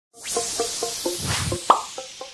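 Short logo intro sting: a quick run of short plucked, plopping notes, about four a second, over a whooshing hiss, ending on a louder note that rises in pitch near the end.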